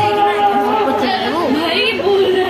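A group of people chattering. One voice holds a long steady note through the first second, then others talk over each other.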